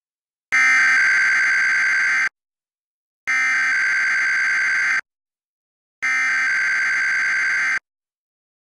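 Emergency Alert System SAME header: three identical bursts of digital data tone, each just under two seconds long and about a second apart. These bursts are the coded header that opens an EAS Required Weekly Test.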